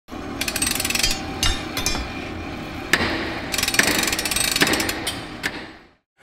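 Workshop hand-tool sounds: bursts of rapid ratcheting clicks and several single sharp metallic strikes, fading out at the end.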